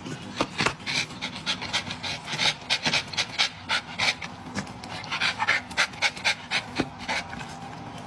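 A dog panting hard in quick, uneven breaths, several a second, excited by fried chicken held in front of it.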